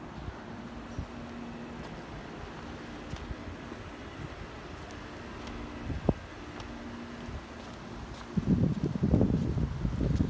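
Wind buffeting a phone microphone outdoors, over a faint steady hum. There is a single sharp knock about six seconds in, and stronger wind rumble on the microphone in the last second and a half.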